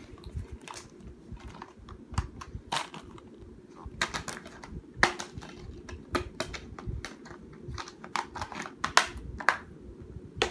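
Irregular small clicks and taps, some single and some in quick runs, over a steady low hum.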